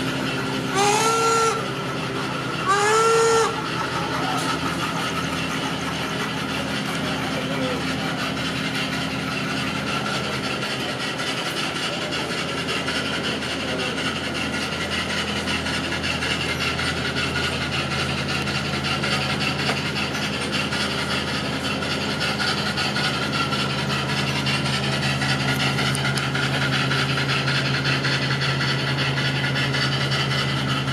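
Two short whistle toots from a garden-scale model steam locomotive, each about half a second long and about two seconds apart, over a steady low engine hum that continues afterwards.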